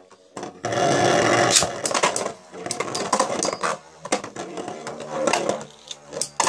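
Two Beyblade spinning tops whirring and rattling as they run around a plastic stadium bowl, with sharp clacks each time they collide, several times over.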